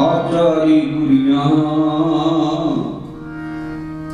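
Kirtan: a male voice sings a devotional melody over harmonium accompaniment. The singing stops about three seconds in, leaving the harmonium holding a steady chord.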